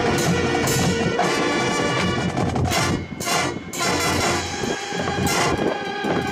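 High school marching band playing: brass with marching drums and front-ensemble percussion. Sharp percussion strikes come in about halfway through.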